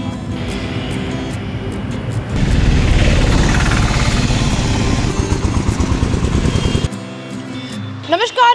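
Background music, overlaid from about two and a half seconds in by the loud running of a motor vehicle engine close by in street traffic, which drops away about a second before the end.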